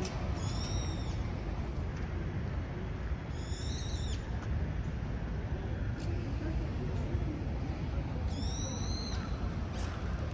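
A bird giving three short, high-pitched squealing calls, a few seconds apart, each rising and falling, over a steady low rumble of street noise.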